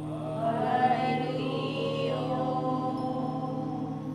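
Meditation music: a chanted vocal line over a steady low drone, the melody gliding upward about half a second in.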